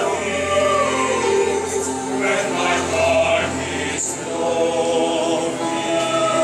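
Mixed choir of women's and men's voices singing in parts, holding long sustained chords.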